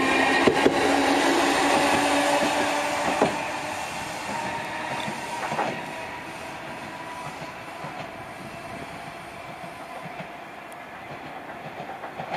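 Chikutetsu 3000-series articulated tram passing close by, its wheels clicking over rail joints over a steady motor whine. The sound then fades as the tram moves away down the line.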